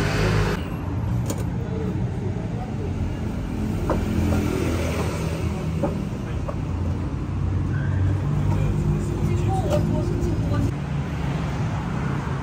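Road traffic passing close by: a steady low rumble of cars, with a few faint clicks.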